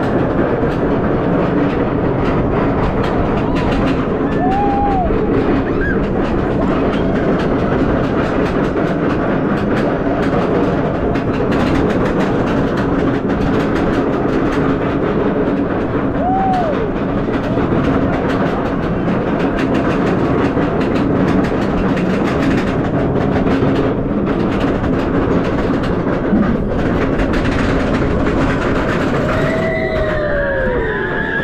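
Roller coaster train being hauled up a steep lift hill: a steady, dense mechanical rattle from the lift, with brief squeaks a few times. Near the end the train crests the top, and a falling squeal comes from the wheels as it turns.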